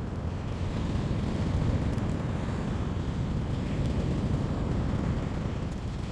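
Steady wind noise on the microphone: an unbroken low rumble.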